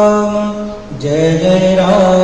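Hindu devotional chanting to Hanuman: a voice holds one long sung note, breaks off briefly just before a second in, then takes up a new, lower held note.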